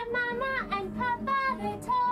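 A song: a voice singing a melody over guitar accompaniment.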